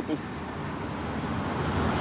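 Road traffic noise, growing gradually louder.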